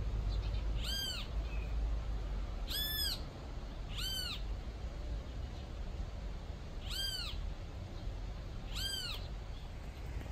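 A high, cat-like mewing call from an animal, repeated five times in short calls that rise and fall in pitch, one every one to three seconds, over a low rumble.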